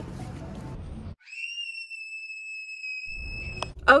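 A steady, high whistle-like tone holds for about two and a half seconds over otherwise dead silence, rising slightly as it starts. It comes after about a second of faint store background noise and ends as a low rumble and a voice come in.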